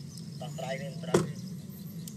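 Faint voices of people talking at a distance over a steady low hum, with one sharp knock about a second in.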